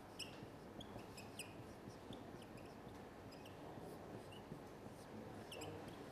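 Marker squeaking on a whiteboard in many short, high squeaks as the writing strokes are made, over faint room hum.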